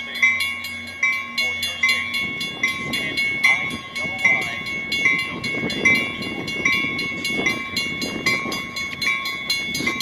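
A train warning bell rings steadily, about one and a half strokes a second, while an approaching commuter train's low rumble builds from about two seconds in.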